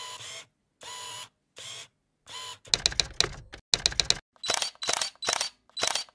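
Mechanical clicking sound effects for an animated title: four short separate bursts, then from about halfway through, quick runs of sharp clicks, about five a second near the end.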